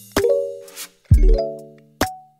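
Background music: a beat with deep bass hits and plucked synth chords that ring out and fade, with a snare-like hit just before the bass lands about a second in.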